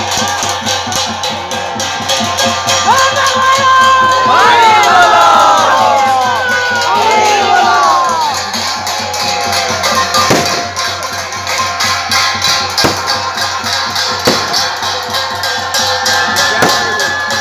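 Fast, continuous festival drumming with rattling percussion, joined in the middle by a swell of many crowd voices shouting and cheering in rising-and-falling calls that make the loudest stretch.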